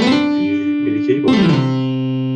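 Notes from the Microsoft GS Wavetable Synth played from Reaper's virtual MIDI keyboard. The pitch slides up into a held note, then slides down about one and a half seconds in and rings on.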